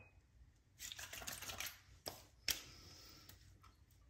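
Faint light clicking and rattling from handling a bottle of bay rum aftershave and its cap, followed by two sharper clicks about half a second apart.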